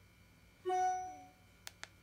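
A single short pitched note that fades away within about half a second, then two quick light clicks close together near the end.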